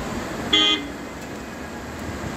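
A vehicle horn gives one short toot about half a second in, over a steady background noise.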